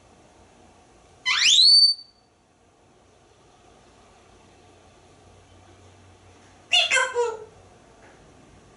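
African grey parrot giving a single loud rising whistle that glides up and levels off at the top, about a second in. About five seconds later comes a short burst of speech-like chatter.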